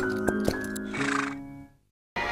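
Short musical jingle with horse sound effects, a horse whinny about a second in, fading out to silence near the end.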